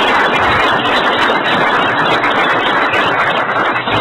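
A roomful of people applauding, the clapping dense and steady.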